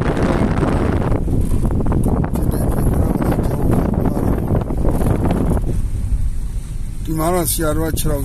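Car interior noise while driving: a steady low road rumble with rough rattling over the lane surface that eases off about five and a half seconds in. A person's voice, laughing, comes in near the end.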